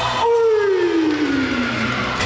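A single tone gliding steadily down in pitch over about a second and a half.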